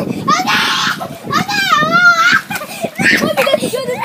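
Boys laughing and yelling.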